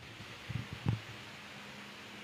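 Quiet room tone with two faint handling knocks about half a second and a second in, from a handheld microphone being passed from one person to another.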